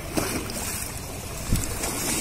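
Muddy seawater surging and washing over concrete ghat steps, with a short low thump about one and a half seconds in. Wind is buffeting the microphone.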